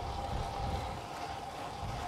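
Steady wind rush over the action camera's microphone and rumble from a road bike's tyres rolling on tarmac, with a faint constant hum.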